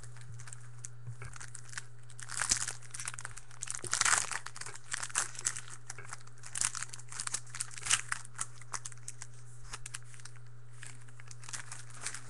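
A trading-card pack wrapper being torn open and crinkled by hand: irregular crackling rustles, loudest about four and eight seconds in.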